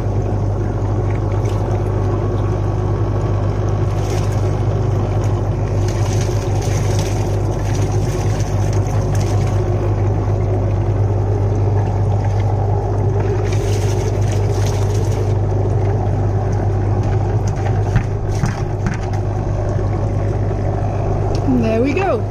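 Compost-extract bubbler running: an electric air pump's steady low hum with air bubbles churning the water in a plastic drum, as compost is tipped into the aerated water.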